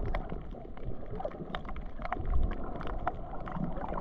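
Underwater reef ambience picked up by a camera in the water: a steady low rumbling wash with many short, sharp clicks scattered throughout.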